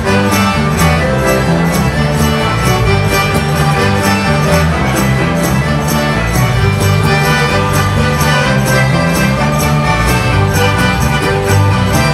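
A live folk dance band playing an instrumental tune, with fiddles leading over accordion and a steady beat from a cajón.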